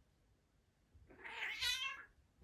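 A cat meowing once, a drawn-out, wavering call about a second long that starts halfway through, while two cats play-fight.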